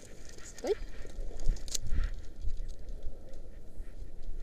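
Irregular low rumbling and knocking from handling and wind on a body-worn camera's microphone as a rope jumper hangs and moves in his harness, with a short vocal sound about half a second in and a sharp click near the two-second mark.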